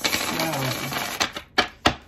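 A deck of tarot cards shuffled by hand: a dense rustle of cards sliding over one another for about a second, then three sharp clicks of cards slapping together.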